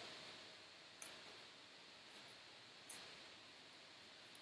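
Near silence: room tone, with two faint clicks about two seconds apart.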